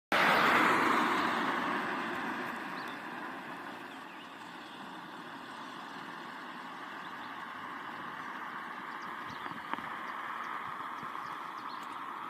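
A vehicle passing, loudest at the start and fading over the first four seconds, leaving a steady distant hum.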